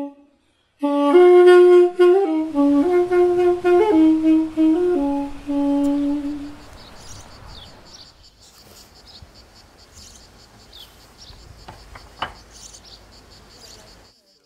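Armenian duduk, the apricot-wood double-reed pipe, playing a short, slow phrase of held notes that steps mostly downward. It stops about six and a half seconds in, leaving only faint background noise.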